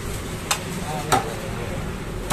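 Meat cleaver chopping through a chicken carcass into a wooden log chopping block: two sharp chops, the second louder, about two-thirds of a second apart.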